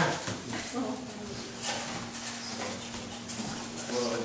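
Indistinct chatter of several people talking at once in a room, with no single voice standing out.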